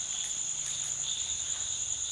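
Night insects, crickets, trilling in a steady, continuous high-pitched chorus.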